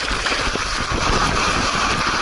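Loud, steady rush of water spray and wind buffeting the microphone of a camera sliding down a waterslide at speed.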